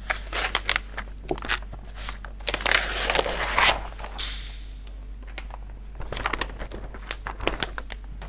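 Backing foil being peeled off a flexo printing plate and crumpled by hand: rustling and crackling, heaviest in the first four seconds, then scattered sharper crinkles that stop just before the end.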